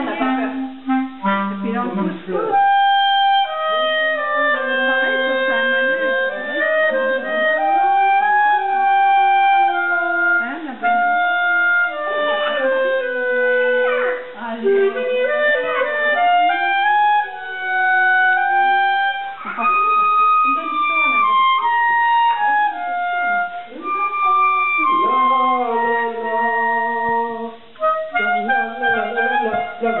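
Clarinet playing a melody of held notes that step up and down, with quick runs of short notes near the start and again near the end.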